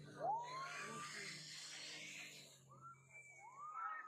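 Riders on a towed inflatable tube shrieking and whooping as it is pulled across the water: a loud rising whoop about a third of a second in and another rising-and-falling cry near the end. Underneath runs a steady low engine hum with a rush of water spray.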